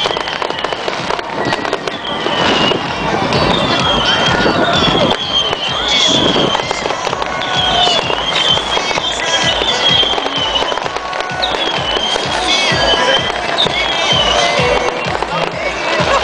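Beach crowd noise with heavy rain crackling on the camera microphone. Over it, a high swooping shrill tone repeats about once a second.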